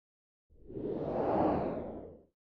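Whoosh sound effect for an animated logo intro. It starts about half a second in, swells to a peak in the middle, then fades away.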